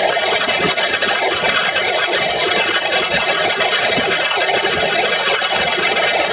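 Heavily distorted, effects-processed audio: a loud, dense, steady wash of noise with no clear tune.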